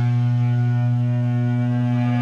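A single low amplified guitar note ringing out steadily as the band stops playing, held without change or drums.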